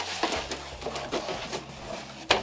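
Hands rummaging inside a cardboard box: an irregular run of rustling, scraping and small knocks of cardboard and its contents as a plush toy is searched for and pulled out.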